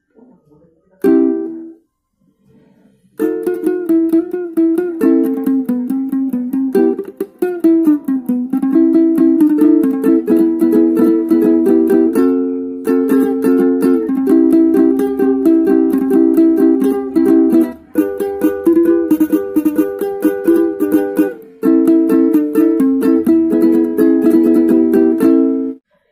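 Three-string kentrung, a small ukulele-type instrument freshly tuned to E-B-G, strummed in a quick rhythm of chords as a check of the tuning. A single chord sounds about a second in, then steady strumming starts about three seconds in and runs with a few short breaks.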